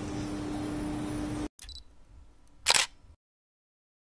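Room noise with a steady low hum that cuts off abruptly about a second and a half in, then a single loud camera-shutter click near three seconds.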